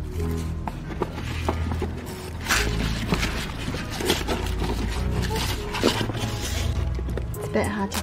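Background music with a steady bass line, over irregular rustling and crackling of paper packaging as a hand rummages in a paper shopping bag and lifts a boxed item out.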